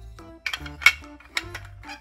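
Small plastic toy dishes and a spoon being picked up off a high chair tray: about four sharp clacks, the loudest near the middle.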